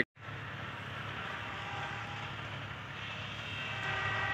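A distant engine's steady hum, getting slightly louder towards the end.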